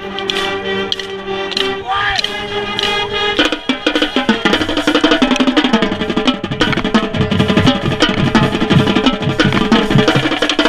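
High school marching band playing in the stands: held chords at first, then from about three and a half seconds in a quick, steady run of drum strokes from the drumline, including the quads right at the microphone, joins under the tune.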